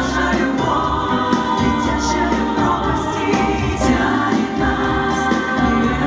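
Female vocal group singing a pop song together into microphones over band accompaniment with a steady bass.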